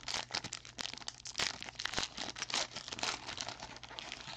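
Foil trading card pack wrapper being twisted, torn open and crinkled by hand: a dense run of irregular sharp crackles.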